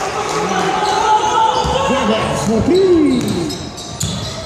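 A basketball bouncing on a hardwood gym floor during a game, with a few low thuds. Players shout to each other over it.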